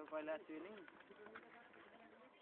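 A man's commentary voice, drawn out and trailing off in the first half-second with one short rising-and-falling sound, then faint quiet.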